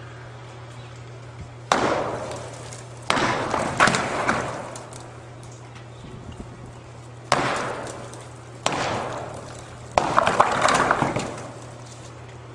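Heavy hammer blows against the base of a concrete stave silo: about six sharp strikes, irregularly spaced, each followed by a second or so of crumbling, rattling debris as the silo wall is broken out.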